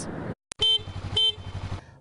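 Vehicle horn giving two short honks about half a second apart, over a low rumble of engine and traffic.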